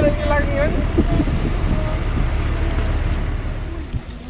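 Steady low outdoor rumble, with a person's voice briefly at the start.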